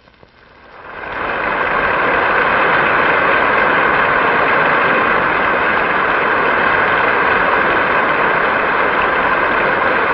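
Large audience applauding at the end of a sung spiritual. The applause swells up within the first second and then holds steady and loud.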